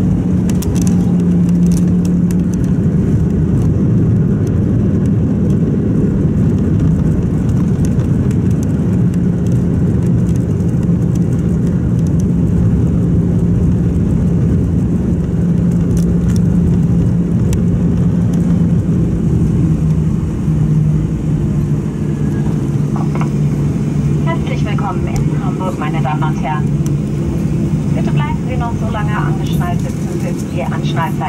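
Cabin noise of an Airbus A320 rolling out on the runway after landing: a steady low rumble with the hum of its CFM56 engines at idle, the hum stepping down lower about two-thirds of the way in. A voice comes in over the noise for the last several seconds.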